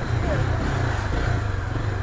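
Honda CB300's single-cylinder engine running steadily at low revs as the motorcycle creeps between queued cars, over a constant hum of traffic and road noise.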